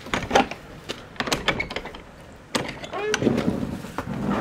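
A metal latch on a wooden barn door is undone with a few light clicks. About two and a half seconds in, the door is pulled open with louder knocks, scraping and a short creak.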